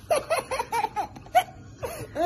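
Toddler laughing in a quick run of short, high-pitched bursts.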